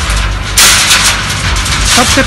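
A bundle of steel reinforcing bars (rebar) thrown down onto a stack of rebar: a loud metallic clatter about half a second in that dies away within about a second.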